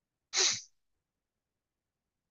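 A single short sneeze, about half a second long.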